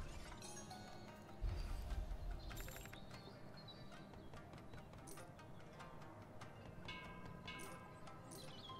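Quiet online slot game audio from Ronin Stackways: faint background music under reel and symbol-landing sound effects, with a low thud about one and a half seconds in and a brief run of quick clicks a second later.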